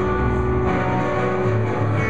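A live band's guitars playing an instrumental passage between sung lines, with sustained chords over a moving low line.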